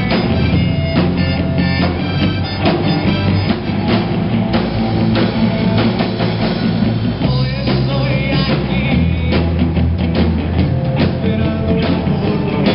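Live rock band playing loudly: electric guitars over a drum kit, with a steady driving beat.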